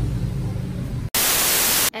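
A steady low hum, then about halfway through a loud burst of static hiss lasting under a second that starts and stops abruptly: a TV-static transition effect at a cut between shots.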